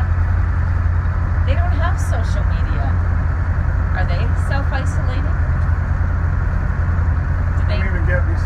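A twin-engine motorboat's engines running steadily under way, a loud, even low drone heard from inside the wheelhouse. A voice talks briefly over it a few times.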